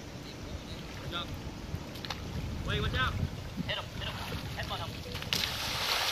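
Wind rumbling on the microphone over faint, distant voices of people in a swimming pool; a little after five seconds in, pool water starts splashing loudly as someone moves through it.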